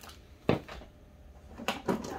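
A single knock about half a second in as a zip-top bag of sidewalk chalk is set down on a table, followed near the end by a few light clicks and rustles of items being handled.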